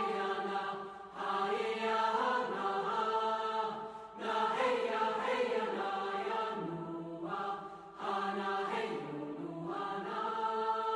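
Background music of voices singing long held notes, choir-like and chant-like, in phrases broken by short pauses about a second, four seconds and eight seconds in.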